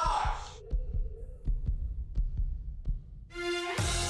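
A short swell in the first half-second, then a low, heartbeat-like pulsing with faint ticks, a tension effect in the soundtrack. About three seconds in, the show's theme music starts.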